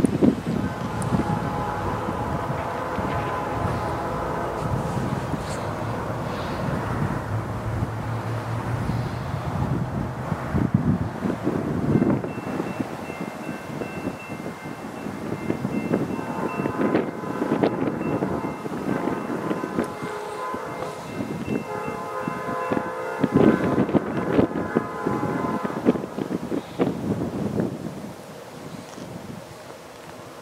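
A diesel locomotive's multi-chime air horn, from an approaching Norfolk Southern EMD SD40-2, blowing for a road crossing. A long blast runs for the first ten seconds or so, then after a pause come further blasts, the last one long. Wind buffets the microphone throughout.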